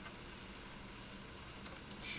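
A few faint computer keyboard keystrokes near the end, after a stretch of low, steady background noise.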